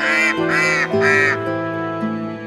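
A duck quacking three times in quick succession, about half a second apart, over soft background music.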